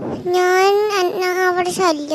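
A high, child-like voice singing long drawn-out notes: one held note, a brief break, then a second note that slides down near the end.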